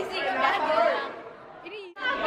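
Indistinct chatter of several voices echoing in a large hall, fading to a low murmur in the second half and cutting off abruptly near the end.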